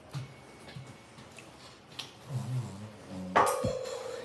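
A quiet room with a few faint clicks, then about three-quarters of the way in a child sings a loud, held note.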